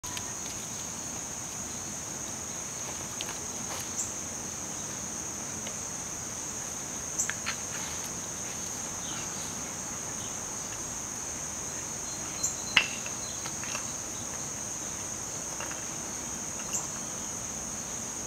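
A steady, high-pitched insect chorus drones on without a break. A few scattered sharp clicks and taps sound over it, the loudest about two-thirds of the way through.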